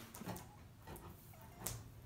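Quiet basement room tone with a faint steady low hum, a few soft handling clicks and one sharper click about a second and a half in.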